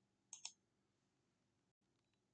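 Two quick computer mouse clicks, a tenth of a second apart, selecting a spreadsheet tab.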